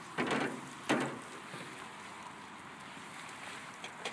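Wood fire burning under a pan on a wire-mesh grill, a steady low hiss with two short louder sounds in the first second and a faint click near the end.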